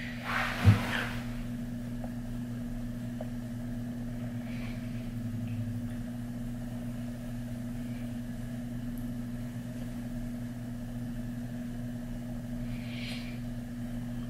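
A steady low hum throughout. In the first second there is a short rustle and a thump as the loose-powder jar and brush are handled, then only faint brief sounds while the powder brush is swept over the face.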